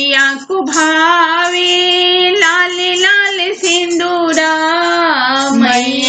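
A high-pitched solo voice singing a Bhojpuri devi geet, a Navratri devotional song to the Goddess, in long held notes that bend and waver in pitch, with short breaks between phrases.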